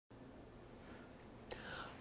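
Near silence with faint room hiss, then a soft intake of breath about one and a half seconds in, just before a narrator starts speaking.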